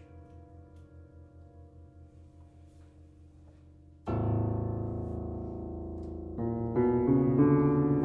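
Grand piano being played in a free improvisation: the last notes fade to a quiet low hum, then about halfway a loud low chord is struck and rings out. More chords and notes follow near the end.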